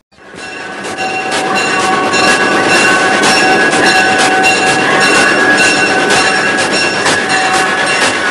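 Recorded train sound effect opening an Italo disco track: a running train with regular clicks and steady held tones over a dense rushing noise, fading in over the first second.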